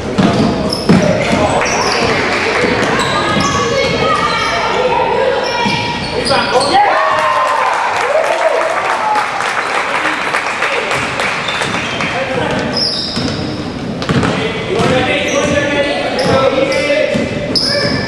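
Basketball dribbled on a hardwood gym floor during a game, with repeated bounces, sneakers squeaking, and spectators' voices and shouts.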